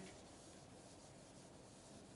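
Faint, steady rubbing of a whiteboard eraser being wiped across the board.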